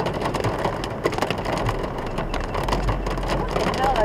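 Heavy rain beating on a car's roof and windscreen, heard from inside the cabin: a dense hiss pricked with many sharp drop hits, over the low hum of the car's running engine.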